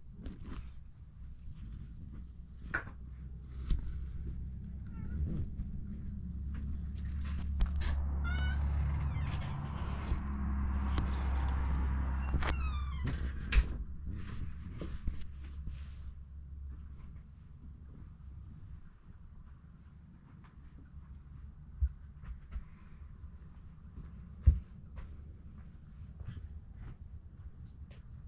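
A cat purring: a low, steady rumble that swells for several seconds in the middle, with scattered light clicks and knocks.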